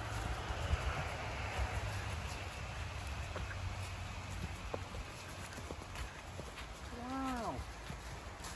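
Footsteps of several people walking and rustling through dry fallen leaves on a forest trail. Near the end comes one short vocal call that rises and falls in pitch.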